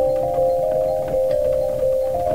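Sampled celesta played from a studio keyboard: a short melody of bell-like notes stepping up and down several times a second, over a soft low bass underneath.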